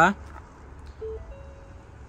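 Quiet background with a low rumble and a few faint short tones about a second in, after a man's word trails off at the very start.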